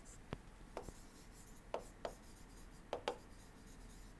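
Faint taps and light scratches of a pen stylus on a tablet surface as a word is handwritten, about half a dozen separate ticks spread irregularly.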